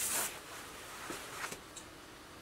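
A hand briefly brushing across a stainless steel tabletop, a short rub at the start, then faint room noise with a couple of soft knocks.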